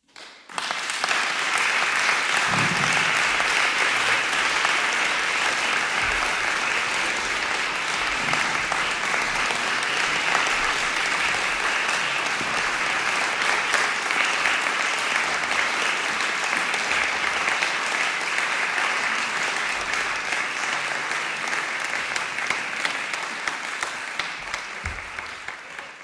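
Concert audience applauding, starting suddenly after silence, holding steady, then tapering off near the end.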